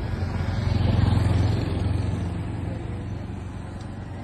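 A motor vehicle going by on the road, a low rumble that swells about a second in and then fades away.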